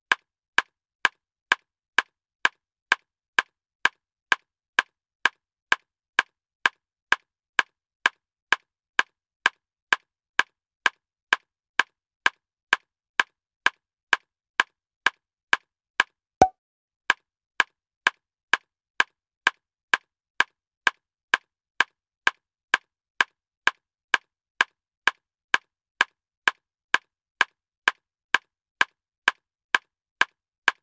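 Evenly spaced ticks, about two a second, with silence between them. A little past the middle the beat breaks for a moment and one sharper click falls in the gap.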